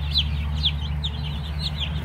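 A brood of chicks a day or two old peeping continuously: many short, high cheeps that fall in pitch, overlapping several a second, over a steady low hum.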